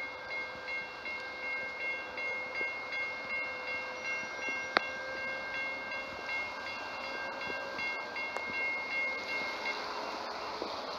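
Railroad grade-crossing warning bell ringing steadily at about two strokes a second, stopping just before the end. A single sharp click sounds about halfway through.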